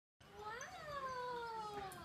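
One long, high-pitched voice-like call that rises briefly, then glides slowly down for more than a second.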